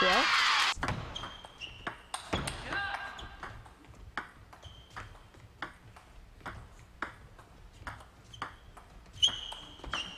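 A loud shout lasting under a second at the start, then a table tennis rally: the celluloid ball clicking sharply off bats and the table in a steady back-and-forth, about two hits a second, with a few short high squeaks of shoes on the court floor.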